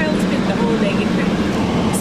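Steady low hum inside a car's cabin, the engine running with the heater on, and faint voices over it.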